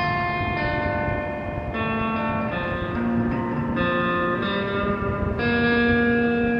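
Electric guitar played through an amplifier: slow, ringing chords, each held and changing about once a second.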